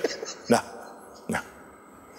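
A man says two short, clipped syllables ("da, da"), a little under a second apart, with quiet room tone between them.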